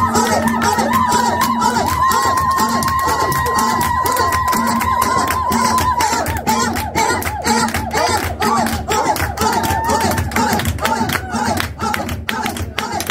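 Loud, upbeat dance music with a fast, dense beat and a long held high note through the first half, with the voices of a crowd of dancing guests over it.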